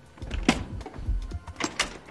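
Carpet extractor's handle being flipped over on its pivot: a series of clicks and knocks over a low rumble, the sharpest about half a second in and two more close together near the end.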